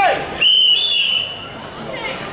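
A referee's whistle gives one long, high, steady blast about half a second in, with a slight rise in pitch partway through. It signals the corner judges to raise their flags for a decision.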